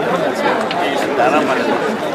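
Speech with overlapping chatter of several voices.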